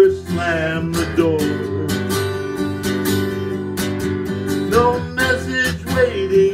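A man sings to his own strummed acoustic guitar. Early on he holds one long note for about three and a half seconds, then the melody moves again over the strumming.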